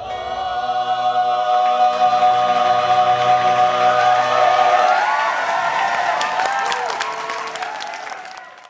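Stage ensemble of singers holding a final chord together, then audience applause breaking out about five seconds in.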